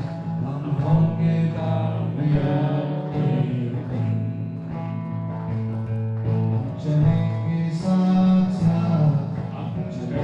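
Live song: a man singing to a strummed acoustic guitar, amplified through the stage microphones.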